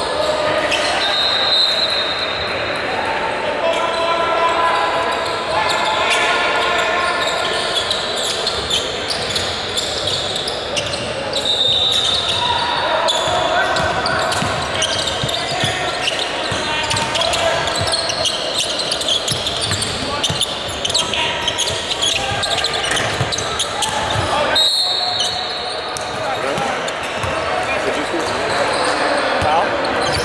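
Basketball bouncing on a hardwood gym floor during play, under steady background chatter from players and spectators, echoing in a large hall.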